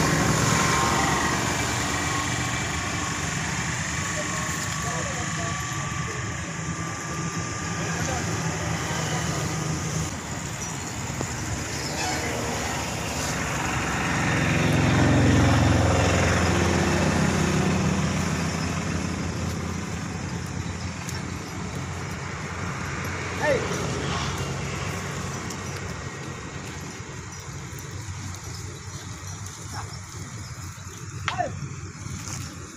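Outdoor background of a steady low hum that swells in the middle and fades toward the end, with indistinct voices and a brief sharp sound about two-thirds of the way through.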